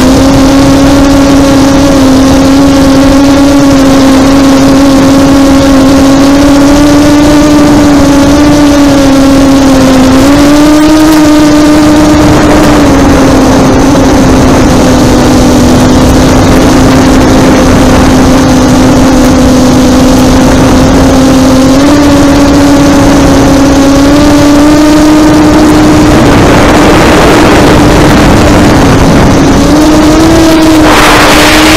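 FPV quadcopter's electric motors and propellers, picked up by its onboard camera: a loud, steady buzzing whine whose pitch rises slightly a few times as throttle is added. A rushing noise builds in over the last few seconds.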